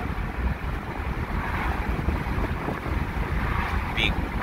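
Steady rumble and wind rush of a moving pickup truck heard from inside the cab: engine, tyre and wind noise at road speed, heaviest in the low end.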